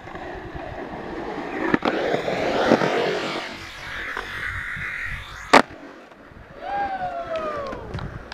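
Skateboard wheels rolling on concrete, with a sharp clack about two seconds in. About five and a half seconds in comes a loud single smack, the board landing after launching out of the bowl. Near the end there is a drawn-out falling tone.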